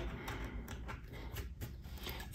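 Faint, light scratching of a screwdriver tip scraping old vinyl adhesive off the glass border of an iPad touchscreen, a few short strokes.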